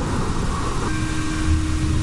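Low, steady rumbling drone of a soundtrack bed, with a held steady tone that comes in about a second in.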